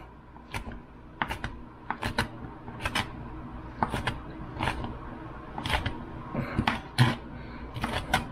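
Chef's knife rough-chopping vegetables on a plastic cutting board: uneven knocks of the blade striking the board, about two a second.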